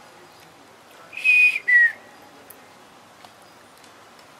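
Two short, loud, high-pitched whistles about a second in, the second shorter and falling in pitch.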